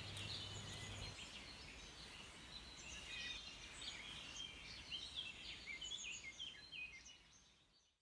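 Faint birdsong: many short, high chirps and trills from small birds, with a low hum that stops about a second in, fading out at the end.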